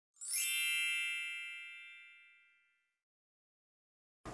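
A single bright, bell-like chime, struck once just after the start and ringing away over about two seconds.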